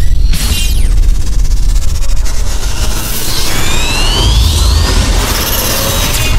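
Cinematic logo-intro sound effects: a deep booming rumble runs under whooshes, with falling sweeps in the first second and rising sweeps building from about three seconds in.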